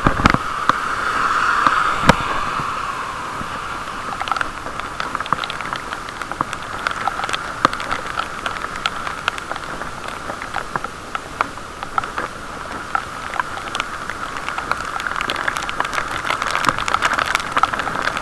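Raindrops ticking irregularly on a waterproof camera case over a steady, muffled hiss from riding a bicycle on wet streets.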